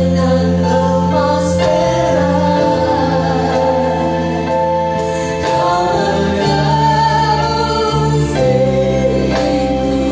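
A worship band playing live: a lead singer sings an Indonesian worship song over keyboard, bass guitar, electric guitar and drums, with long held notes.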